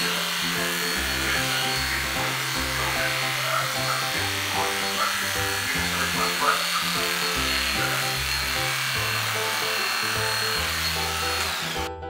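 Aesculap Favorita II electric dog clipper running with a steady high whine while clipping the hair on a terrier's ear, over background music. The clipper stops shortly before the end, leaving only the music.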